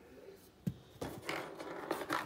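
One sharp click about two-thirds of a second in, then soft rustling and a few light clicks from hands handling small assembly hardware on the laminate tabletop.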